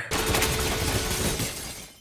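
Glass shattering: a sudden crash of breaking glass that starts sharply and dies away over about two seconds.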